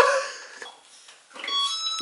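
A man's drawn-out 'oh' trails off at the start. After a quiet stretch, a thin, steady electronic tone from a hoverboard comes in near the end: its warning alarm.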